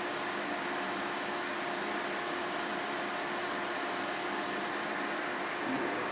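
Steady fan noise with a faint constant hum from the tattoo-removal laser equipment running between pulses, with no laser snaps.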